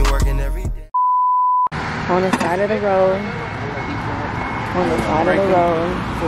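Hip-hop music fading out, then a single steady high electronic beep lasting under a second, followed by outdoor background noise with voices.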